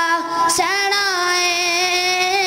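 A boy singing a Punjabi naat unaccompanied in a high voice, with a short break about half a second in and then one long held note.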